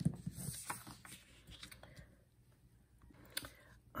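Sheets of white cardstock handled on a tabletop: a cluster of light taps and rustles in the first second, then fainter handling. A single sharp click comes near the end.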